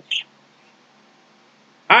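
A pause in a man's speech: faint room tone, with one brief high sound just after the start, before his voice resumes near the end.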